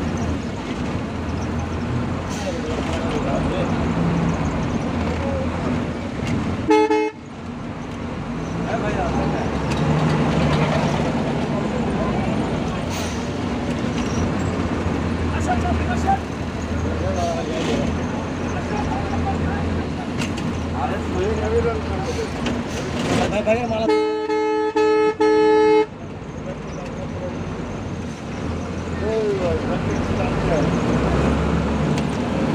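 Vehicle horn honking: one short blast about seven seconds in, and a longer blast about 24 seconds in that is broken into three parts. Underneath there is a steady low engine rumble and people talking.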